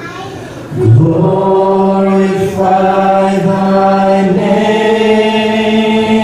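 Voices singing a slow worship song in long held notes over the band's accompaniment, a new phrase starting about a second in.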